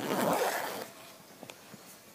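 Zipper on a black fabric backpack being pulled in one long rasp that stops just under a second in, followed by a few faint handling clicks.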